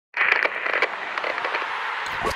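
A crackling, hissing noise effect that starts suddenly, loudest in its first half-second and then steady, laid under the opening logo.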